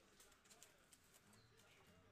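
Near silence, with a few faint clicks and rustles of trading cards being handled.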